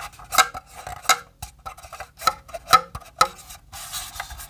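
Hands handling the hard plastic casing of a Sabrent dual-bay hard drive docking station: a series of sharp clicks and taps, about five loud ones, as fingers press the spring-loaded drive-bay flaps. Near the end the hands rub against the casing.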